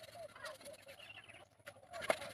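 A bird calling faintly in short wavering notes, with one or two light knocks of a knife on bamboo.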